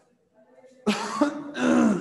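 A man clearing his throat, starting about a second in: a short rough burst, then a longer voiced one that falls in pitch.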